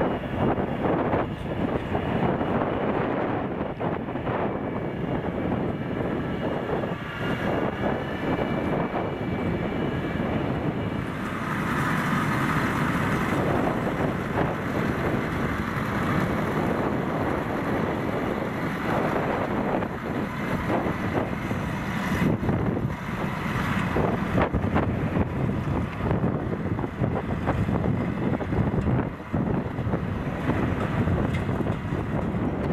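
Fendt 720 tractor and Kuhn MergeMaxx 950 belt merger running steadily as the merger picks up cut grass. A higher whine comes up for a few seconds near the middle.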